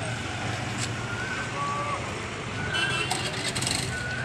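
Roadside traffic noise: motorcycle and scooter engines idling with a steady low hum, with people's voices in the background. It gets louder for about a second near the end.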